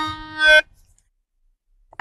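Melodica holding a final reedy note, which swells briefly and then cuts off about half a second in.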